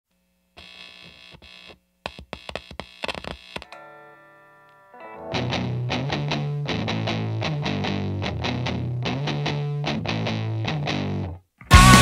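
Opening of a music track: a sparse, quiet start with short stabbed notes, a held note that fades out, then a steady pulsing riff with heavy bass from about five seconds in. After a brief gap near the end, the full band comes in much louder.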